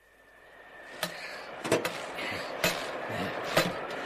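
Radio-play sound effects for a snowy forest scene fading in from silence: a steady hiss with a few sharp, irregular crunches and snaps.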